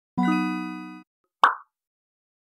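Logo intro sound effect: a held musical note that fades over about a second, followed by a single short pop.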